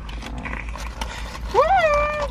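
Paper burger wrappers rustling and food being chewed, then near the end a high-pitched, closed-mouth hummed 'mmm' of enjoyment that rises and then holds.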